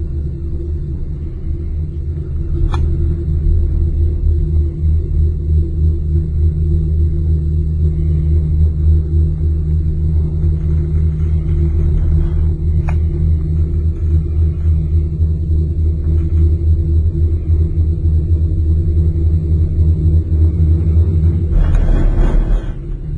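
Steady low rumble and hum of a moving gondola cabin running along its cable, with two faint clicks about ten seconds apart and a brief louder rush near the end.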